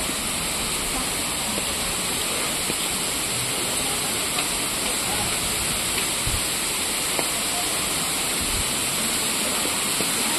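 The steady, even rush of the Pradhanpat waterfall's falling water.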